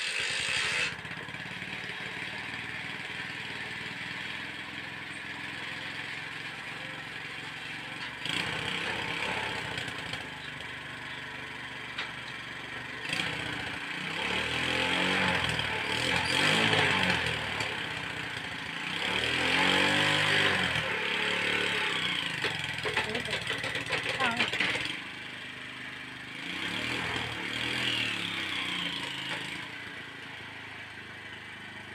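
Motorcycle-type engine of a home-built car running just after being kick-started, revved up and down several times in the second half, each rev rising and falling over a second or two.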